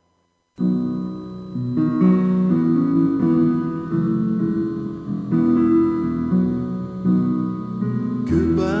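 After a brief silence, instrumental music starts about half a second in: the intro of a song played on acoustic guitar, with ringing chords that change about once a second.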